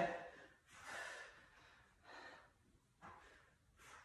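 A woman breathing hard in short, faint exhalations, four in all, from the exertion of weighted sit-ups.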